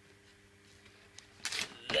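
A battery connector being unplugged from an RC plane's electronics: a few sharp plastic clicks and a short scrape about one and a half seconds in, after a faint steady hum.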